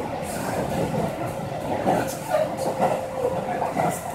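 A train running on its rails, heard from inside the carriage: a steady running noise with a faint steady whine and a few brief louder knocks.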